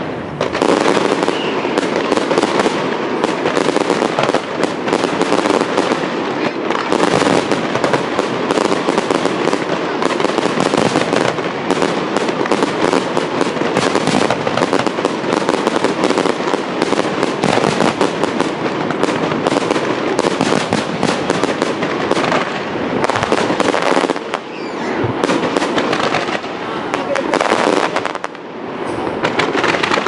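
Fireworks display: a dense, unbroken run of bangs and crackles from shells bursting overhead. There are two short lulls late on.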